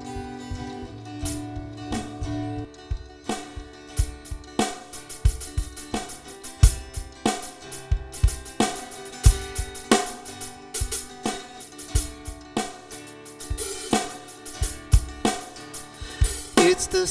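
Instrumental intro of a worship song played by a live band: acoustic guitar chords with a drum kit coming in about a second in and settling into a steady beat on hi-hat, snare and cymbals.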